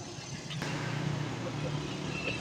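Road traffic noise with a motor vehicle's engine running. It steps up abruptly and gets louder about half a second in.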